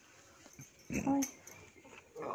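A dog giving one short call about a second in, a brief steady-pitched sound, over otherwise quiet surroundings.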